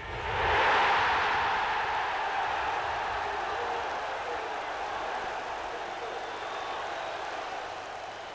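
Football stadium crowd cheering a goal: the cheer swells sharply within the first second, then slowly dies away over the following seconds.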